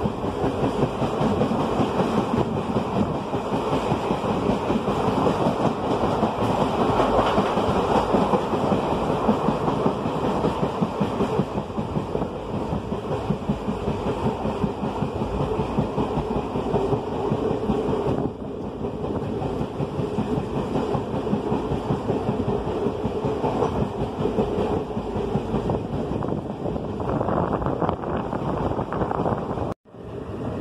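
Passenger train carriage running along the track, heard at an open barred window: a steady rumbling clatter of wheels and coach. It cuts out abruptly for a moment near the end.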